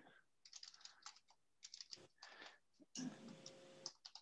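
Faint typing on a computer keyboard: a scatter of soft, irregular key clicks.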